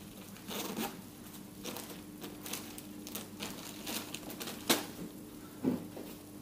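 Rustling of a clear plastic bag and clothing, with scattered light clicks, as a small zipped leather wallet is handled and set back in its bag; one sharper tap about three-quarters of the way through.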